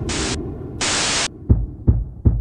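Static-noise sound effect: two short bursts of hiss that stop abruptly, over a low electric hum, followed by two low thumps in the last half second.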